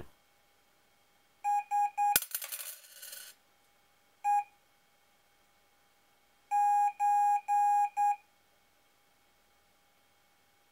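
Morse-code beeps at one steady pitch from a small speaker: three short tones, then a coin dropped onto the table with a sharp clink and about a second of jingling ring, one more short tone, then three long tones and a short one. The dropped coin is deliberate noise of the kind that can corrupt the acoustic Morse transmission between the microcontrollers.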